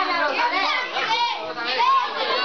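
A crowd of children playing, their high voices chattering and calling out over one another without a break.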